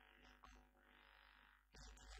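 Near silence: a faint steady low hum.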